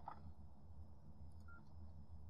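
Near silence over a low steady hum, with a faint click at the start and a single faint short beep about one and a half seconds in.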